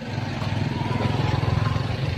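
Small motorcycle engine running steadily close by, a low, evenly pulsing sound, with a faint high whine over it.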